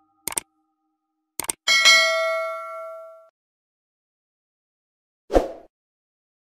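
Subscribe-button sound effect: a mouse click, then a quick double click followed by a bell-like ding that rings out for about a second and a half. A short thump comes near the end.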